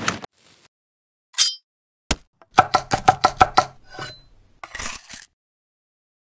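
Chef's knife chopping red chili and garlic on a wooden cutting board. A couple of single knocks come first, then a quick run of about nine chops in just over a second, and a brief scrape near the end.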